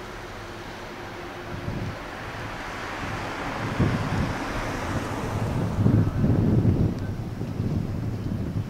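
Wind buffeting the microphone in irregular gusts, strongest about four seconds in and again near six to seven seconds, over a hiss and rumble that grows steadily louder as a train draws near.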